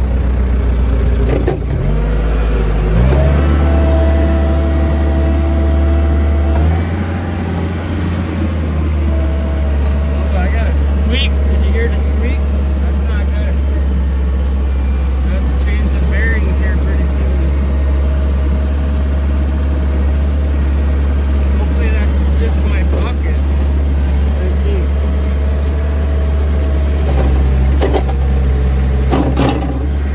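Skid steer loader's engine running hard as the machine drives, its note stepping up about three seconds in, with a few short high squeaks from the machine.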